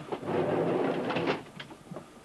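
A loud burst of mechanical scraping and rattling, about a second and a half long, from work on the 747's cockpit panels and window frame, followed by a few light clicks and knocks.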